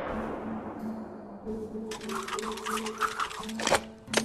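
The echo of a loud bang fades over the first second under a low held music note. From about two seconds in comes a fast rattle of clicks, ending in one sharp click.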